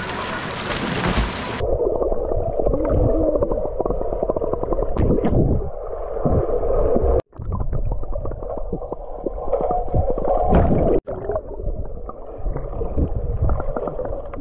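Pool water heard by a camera that goes under the surface: surface splashing for about the first second and a half, then the muffled underwater sound of churning water and gurgling bubbles, cut off twice for an instant.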